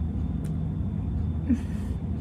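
A steady low machine hum, with a light click about half a second in and a brief soft mouth sound near the end as ice cream is eaten off a spoon.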